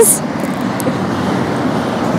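Steady outdoor background noise, an even hiss and rumble with no distinct events, after the last syllable of speech fades at the very start.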